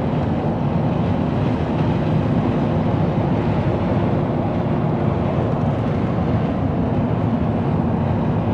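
Car engine running at a steady, unchanging pitch, an even drone with no revving.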